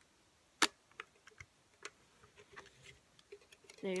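A single sharp click about half a second in, from the film cutter of a Polaroid J33 Land Camera being worked, followed by a few faint clicks as the camera is handled.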